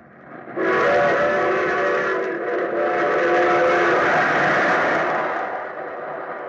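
Radio sound effect of a steam train: a multi-note train whistle blowing twice over a steady rushing noise of the moving train, fading out near the end.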